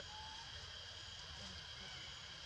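Faint outdoor background with a steady high-pitched hum. A single sharp click comes at the very start.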